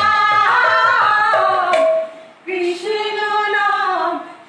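Two women singing a Krishna-naam devotional song in long held phrases that fall in pitch, with a short break about two seconds in. A khol drum plays for the first half-second and then stops, leaving the voices alone.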